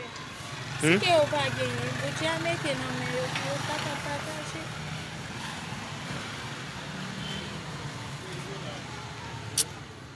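A woman's voice for a couple of seconds about a second in, over a steady low background rumble, with a single sharp click near the end.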